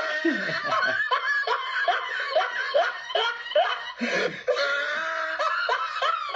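Men laughing together after a joke, a long run of short chuckles that carries on through the whole stretch.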